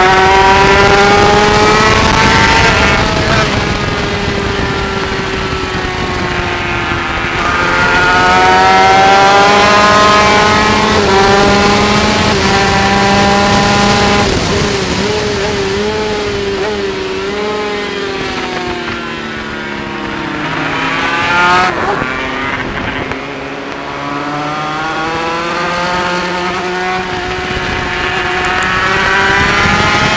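Yamaha TZ250 two-stroke twin race engine heard on board at high revs, over wind and road noise. It climbs through the gears and drops sharply when shutting off for corners, most steeply past the middle, then rises steadily toward the end.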